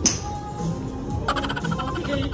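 Background music, with a sharp click right at the start. About a second and a quarter in comes a rapid, stuttering burst of laughter.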